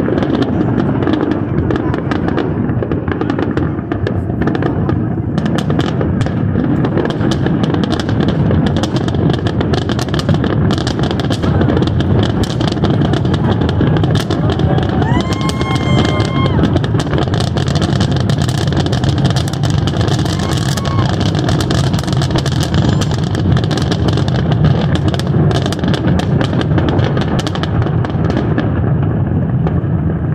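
Fireworks shells bursting one after another, a dense run of bangs and crackles over a continuous low rumble, with people's voices mixed in.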